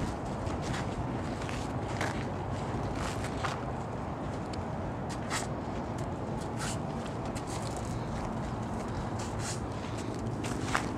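Footsteps on packed dirt, a handful of irregular steps, over a steady low rumble of outdoor background noise.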